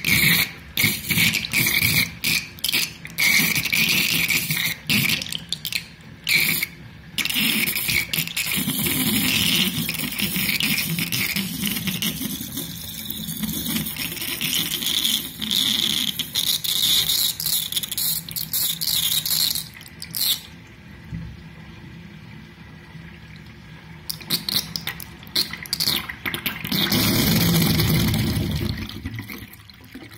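Bathtub drain gurgling and sucking loudly as water swirls down the plughole, in irregular bursts of gurgles. It drops away about twenty seconds in, then comes back with a last loud gurgle near the end.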